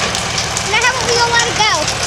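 Small crawler dozer's engine running steadily with a fast, even low pulse. A high-pitched voice calls out over it about halfway through.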